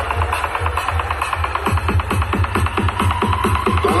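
Loud music with heavy bass and a fast, even beat, blasting from a huge truck-mounted stack of speaker cabinets (an East Javanese 'sound horeg' parade sound system).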